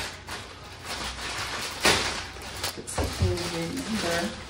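Plastic packaging rustling and crinkling as a courier bag is opened and a plastic bag pulled out of it, with two sharp crackles about two and three seconds in. A brief voice comes in near the end.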